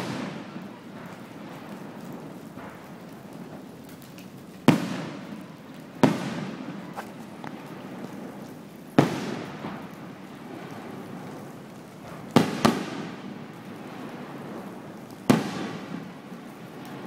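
Aerial firework shells bursting: about six sharp bangs a few seconds apart, two of them in quick succession about three-quarters of the way through, each dying away in a rolling echo.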